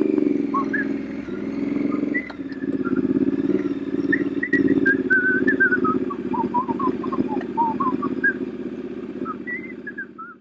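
Triumph parallel-twin motorcycle with its silencers removed, running as it is ridden away, its note dipping briefly about 2 s in and then fading as it draws off. High whistled chirps come in over it from about 4 s on, stepping down in pitch.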